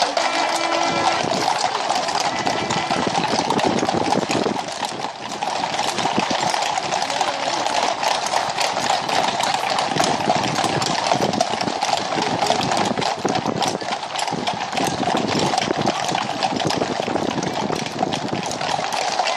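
Hooves of a large group of horses clip-clopping on a tarmac road at a walk, many overlapping hoofbeats in a continuous clatter.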